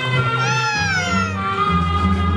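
Recorded dance music with a low bass line and held tones. About half a second in, a sliding pitched sound rises briefly and then falls away over about a second.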